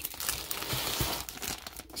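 Plastic comic book bags crinkling and rustling as a hand flips through a box of bagged comics and pulls one issue up, in uneven scratchy strokes.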